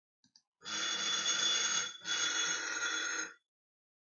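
A size 24 ES-M22430 stepper motor with a 2.5 inch pulley, driven by a KStep at its resonant speed of about 106 full steps per second with active damping off, running with a harsh resonant buzz. It runs about 1.3 s, breaks briefly about 2 s in, then runs again for about 1.3 s. The undamped resonance shakes the shaft by about plus or minus seven encoder counts. Two faint mouse clicks come just before it starts.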